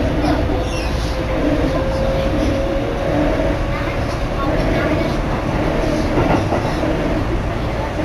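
Keikyu Main Line electric commuter train running between stations, heard from inside the car: continuous rumble of wheels on rail with a steady whine that fades out about five seconds in.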